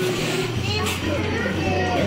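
Voices, mostly children's, chattering and calling out in short high-pitched bits.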